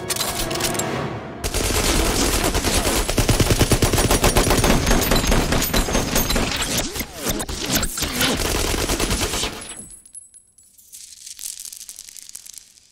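Several submachine guns firing long continuous automatic bursts together for about eight seconds, then stopping abruptly. After the firing stops there are faint scattered clinks of bullets falling onto a hard floor.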